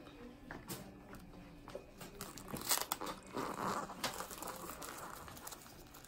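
Faint crinkling and rustling of a thin plastic adhesive drape and the suction pad of a negative-pressure wound therapy (wound vac) dressing as gloved hands press them down, with scattered small clicks and a slightly louder rustle a little past the middle.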